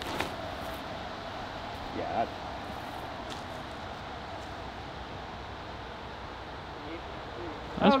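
Steady wind rustling through the trees, an even hiss, with a short click at the start and a brief voice sound about two seconds in; speech begins just before the end.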